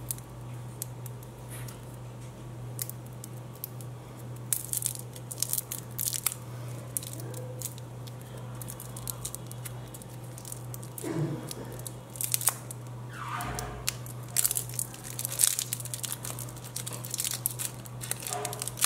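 Thin plastic lollipop wrapper being peeled and torn off by hand, crinkling with many sharp crackles that come thicker and louder in the second half.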